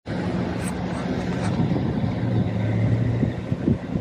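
Car engine idling with a steady low hum, heard from inside the car with the driver's window open.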